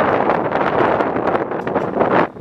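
Wind buffeting the camera's microphone: a loud, unsteady rush of noise.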